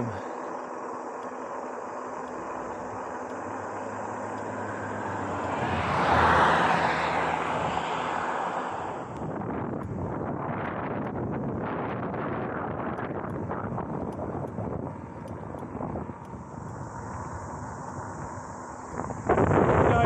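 Wind over the camera microphone and fat tyres rolling on asphalt as an electric fat-tyre bike rides along a road. About six seconds in, a louder swell rises and fades over a couple of seconds.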